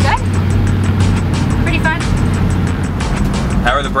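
Ford Galaxie 500 rat rod under way, heard from inside the cabin: a steady low engine drone with road noise. Background music with a steady beat plays over it.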